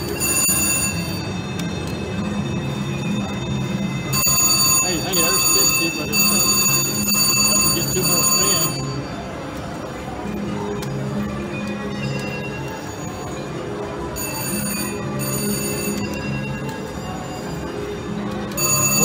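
VGT reel slot machine playing its electronic chimes and bell-like ringing tones as the reels spin and a small win pays. The bright ringing comes in several spells, the longest from about 4 to 9 s, over a steady background of casino machine music.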